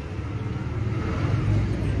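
Road traffic: the low, steady rumble of a motor vehicle running close by, growing a little louder in the second half.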